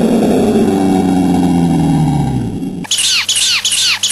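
Edited cartoon audio: a pitched sound slides steadily down in pitch for nearly three seconds, then cuts off abruptly into a rapid run of short, high falling chirps, about four a second.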